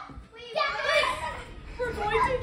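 Excited children's voices: overlapping, unclear chatter that starts after a brief lull and picks up again near the end.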